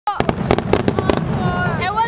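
Fireworks crackling: a rapid run of about ten sharp pops over the first second or so, dying away as a voice comes in.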